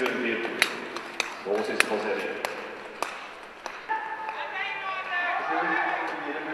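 Indistinct voices in a large hall, with a sharp click about every 0.6 s for the first few seconds, six in all. The voices grow clearer near the end.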